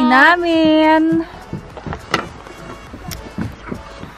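A voice holding a long, drawn-out vowel for about the first second. Then quieter background talk with scattered light clicks.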